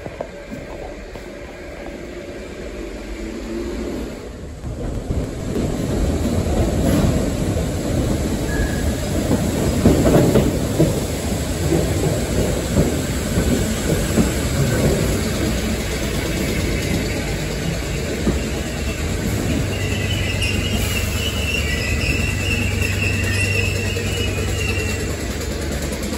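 Merseyrail electric train moving along an underground station platform, its rumble building from about four seconds in and staying loud. A high-pitched squeal comes in from about twenty seconds in.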